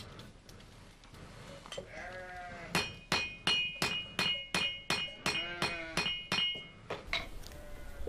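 A pointed stone-dressing hammer chips at a stone whetstone (kösüre) blank in rapid, regular strikes, about three a second, each with a short high ring. This is the final dressing of the roughed-out stone. Through it come bleat-like animal calls.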